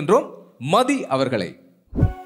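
A man speaking into a handheld microphone as a stage host, in short phrases, followed by a brief low thump right at the end.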